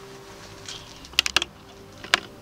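Three quick, light clicks about a second in, from small hard objects being handled on a makeup table, over a faint steady hum.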